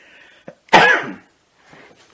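A person clearing their throat once, short and loud, a little under a second in.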